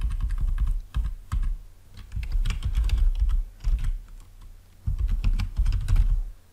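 Typing on a computer keyboard: several quick runs of keystrokes with short pauses between them.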